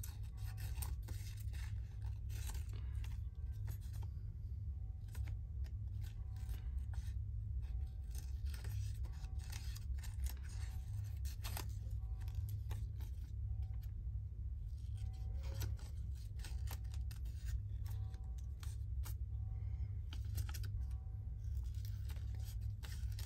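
Small scissors snipping paper in many short, irregular cuts while cutting around a small printed image with fine branch-like edges, over a steady low hum.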